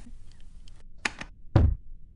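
A few faint clicks, a sharp click about a second in, then one short, heavy thump with a deep low end about a second and a half in: a staged film explosion blowing up the person in the recording booth.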